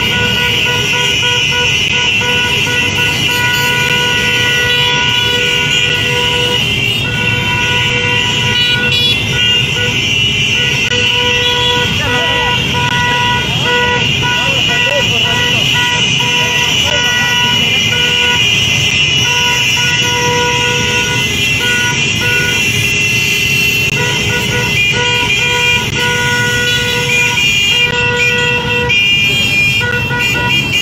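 A large pack of motorcycles riding together, engines running, with a horn sounding near-continuously over them and breaking off now and then.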